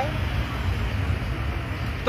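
Steady low rumble of street traffic in a pause between spoken sentences.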